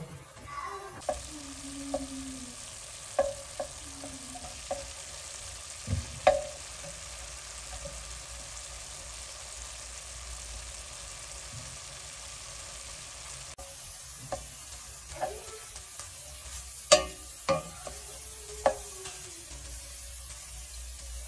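Ground meat sizzling as it browns in a pot, stirred with a wooden spoon that knocks and scrapes against the pot several times; the loudest knock comes about 17 s in.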